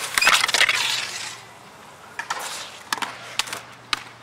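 Skateboard wheels rolling on concrete with a quick cluster of clacks in the first second or so, then three or four separate sharp clacks of the board hitting the concrete.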